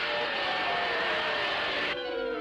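Cartoon sound effect: a steady rushing hiss with a thin high whistle in it, as a rope is hauled up fast. It cuts off suddenly near the end.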